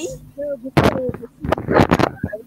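Loud crackling bumps and scrapes from a headset microphone being handled and adjusted: one bump under a second in, then a quick cluster of them near the end, with a few faint voice fragments in between.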